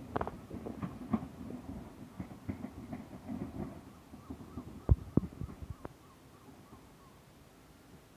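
Thameslink Class 700 electric multiple unit pulling away, its wheels clicking and clunking over rail joints and points as it recedes. The sound thins out, with two loud clunks about five seconds in, then goes quiet.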